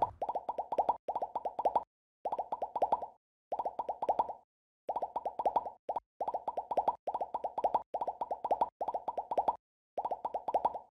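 Electronic sound track of an animated logo sequence: quick repeated pulses of a mid-pitched tone in bursts about a second long, each burst followed by a short silence.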